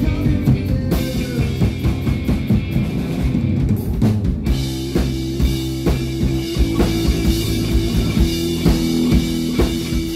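Live rock band playing an instrumental passage on drum kit, electric guitar and electric bass, with no singing. The drums hit steadily throughout, and about halfway through the guitar and bass move into held, ringing chords.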